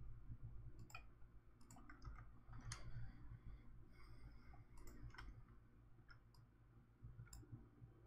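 Faint computer mouse clicks, about seven scattered irregularly, over a low steady hum in otherwise near silence.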